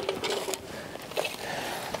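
A few light clicks and knocks as a folding camping table is laid flat and its folded legs are lifted off it.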